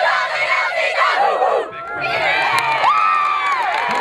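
Women's lacrosse players cheering and shouting together in a group, many high-pitched voices overlapping, dipping briefly about halfway through. Sharp claps come through in the second half.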